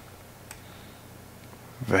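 Quiet room with a steady low hum and a single faint computer mouse click about half a second in. A man starts speaking near the end.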